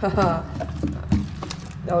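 Wooden spoon stirring a wet fish-and-cotton-ball mash in a plastic tub, knocking against the tub several times at an irregular pace.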